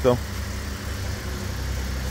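A vehicle engine idling steadily: a low, even hum.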